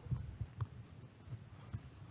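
Faint, irregular low thumps over a low hum.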